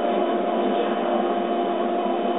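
Laser cutter running as it cuts basswood: a steady mechanical hum with a hiss and a few even tones, from the machine's fans and the head's motion.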